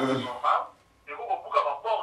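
A voice talking in short phrases, with a brief pause about a second in.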